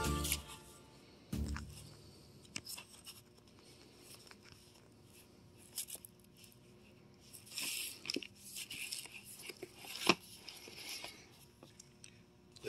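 Vinyl LP jackets being flipped through in a record bin: cardboard sleeves sliding and scraping against each other, with scattered soft rustles and light clicks. Music is heard for a moment at the start.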